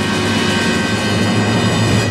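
Full orchestra holding a loud, sustained closing chord over a strong low note, which cuts off at the end and rings away.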